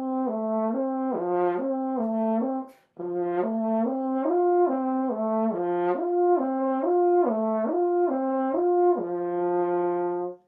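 French horn slurring up and down the notes of a major arpeggio on the horn's natural harmonics, a lip-slur exercise played without valve changes. The notes step smoothly up and down in a repeating pattern, with a short break for a breath between two and three seconds in, and it finishes on a held low note.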